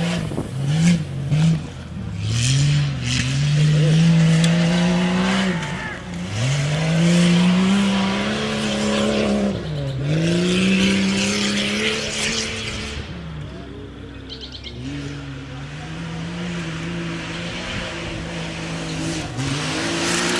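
Lifted Jeep Cherokee XJ race jeep's engine revving up and falling off again and again as it runs through a dirt slalom course. It goes in long swells of rising and dropping pitch, with a few quick blips just after the start. It eases to a quieter, steadier note past the middle, then climbs again near the end.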